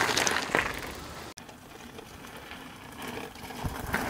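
Mountain bike rolling over a loose gravel track, tyres crunching on stones with a few sharp clicks. The sound cuts off abruptly about a second in and carries on more quietly, swelling again near the end.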